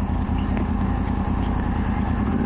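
Sport motorcycle engine running steadily at low revs while creeping along in slow traffic, a low, even engine note under a background hiss.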